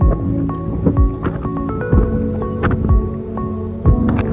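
Background music with held chords and a deep drum beat about once a second.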